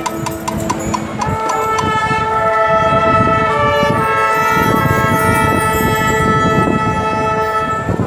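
Marching band's brass section playing a few short repeated notes, then from about a second in holding one long, loud sustained chord, some inner notes shifting within it, with drums beneath.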